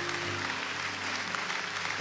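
Congregation applauding over a church keyboard holding sustained chords, the chord shifting about a quarter second in.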